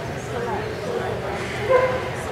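A dog barks once, briefly, near the end, with a fainter yelp or whine just before, over background chatter.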